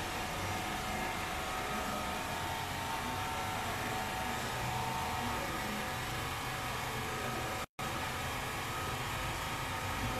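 Steady background hiss with a low hum underneath, unchanging throughout, broken by a short dropout to silence about three-quarters of the way through.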